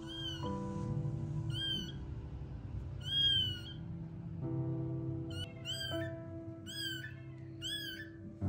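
A newborn kitten mewing repeatedly: about seven short, high-pitched cries that rise and fall in pitch, the loudest about three seconds in, over soft background music.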